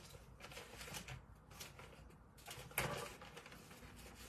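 Paper rustling and crinkling as the backing sheet of a heat transfer is handled and lifted off a metal tray, with a slightly louder rustle about three seconds in.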